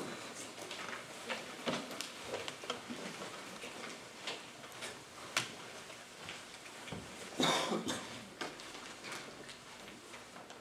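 Low room noise from a seated audience: scattered small knocks, clicks and rustles from people shifting in chairs and handling paper. A short, louder burst of noise comes about seven and a half seconds in.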